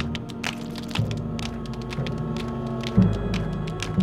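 Tense background music: low held notes that change about once a second, with a heavier low hit about three seconds in, over rapid irregular clicks.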